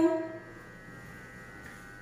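The last word of a woman's voice trails off in the first half second, then a faint steady hum with a few thin high tones carries on.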